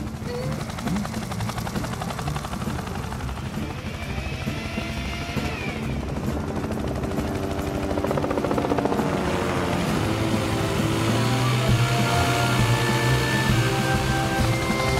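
Animated rescue helicopter's rotor chopping steadily. Background music comes in about halfway through and grows louder.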